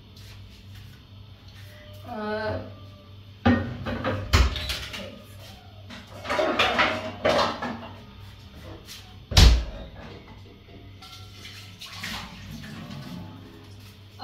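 Knocks and clatter of cookware and a cupboard door as a frying pan is taken out of a low kitchen cabinet. There are several separate knocks, the loudest about nine and a half seconds in, with a stretch of rummaging noise in between.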